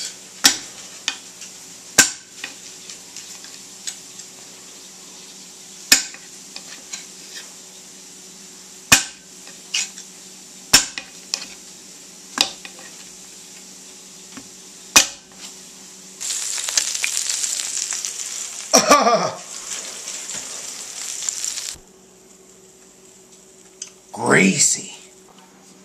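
A serrated knife chopping sausages on a stone countertop, the blade knocking sharply on the counter every one to three seconds. Then a loud, steady hiss, like food sizzling, lasts about five seconds and cuts in and out abruptly.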